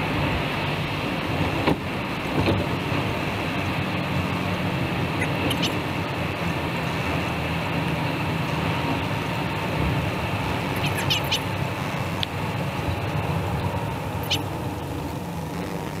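Steady road and engine noise of a car driving at highway speed, heard from inside the cabin, with a few light clicks scattered through it.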